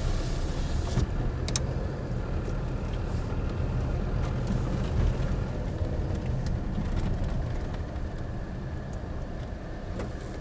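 Steady low rumble of a vehicle driving slowly along a rough dirt lane, heard from on board, with engine and road noise and a sharp click about one and a half seconds in.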